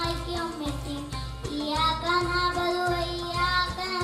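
A child singing a devotional song for Milad un Nabi in long, drawn-out notes, with a low, regular pulse underneath.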